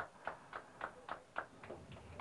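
Faint, irregular light clicks and ticks, about eight in two seconds, over a low background hiss.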